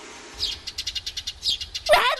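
Small birds chirping: a quick run of short, high chirps. Near the end, a girl's loud, drawn-out shout begins.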